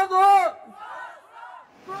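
A man's protest chant shouted into a microphone, loud for the first half-second. Fainter shouted voices from the crowd follow and die away before ordinary speech begins near the end.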